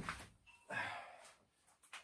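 Faint handling noises as a power lead is plugged in: a light click, then a brief rustle of about half a second.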